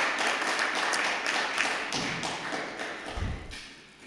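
Applause from a room of people, a thick patter of clapping that dies away in the last second or so, with a low thump about three seconds in.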